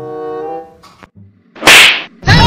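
A held note of background music fades out about half a second in; near the end comes a short, loud whip-like swish, a transition sound effect at a scene change.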